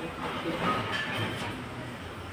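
Steady background noise, a continuous hiss and low rumble with no clear single source.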